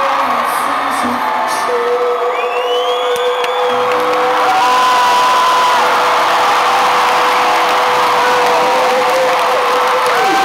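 Arena crowd cheering and whooping over a live rock band's last long held note as the song ends. The cheering swells about halfway through.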